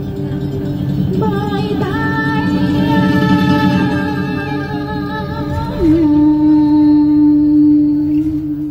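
A woman singing a slow song into a handheld microphone over the coach's sound system, with musical accompaniment; about three-quarters of the way through she holds one long note.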